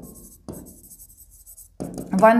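Stylus writing on the glass of an interactive whiteboard panel: faint scratching strokes, with short taps about half a second in and near the end.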